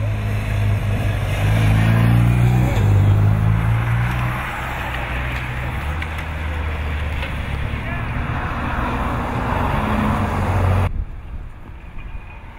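Race escort motorcycle passing close, its engine loudest and dropping in pitch as it goes by a few seconds in, then the steady running engine of a following vehicle. The sound cuts off abruptly near the end.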